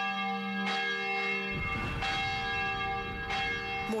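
Church bells ringing, a new stroke about every second and a quarter, each chord of tones ringing on under the next.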